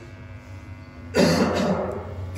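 A man coughs loudly and abruptly about a second in, with a shorter, weaker cough or throat-clear just after. A low steady hum runs underneath.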